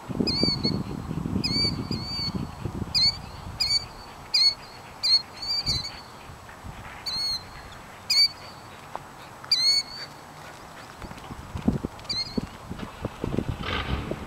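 A bird calling over and over in short, sharp, hooked notes, about two a second for the first six seconds, then a few more spaced calls until about twelve seconds in. A low rumble sits under the first three seconds.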